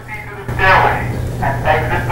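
Building fire alarm going off, a steady low buzz that starts about half a second in, with a voice heard over it.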